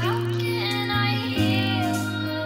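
A song: a woman singing in a high voice over held, steady chords, her voice sliding in pitch near the start.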